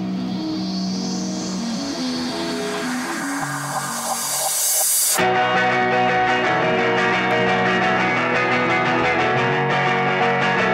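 Electric-guitar rock band playing. The opening is a held, droning passage under a rising hiss. About five seconds in it breaks off suddenly into the full band.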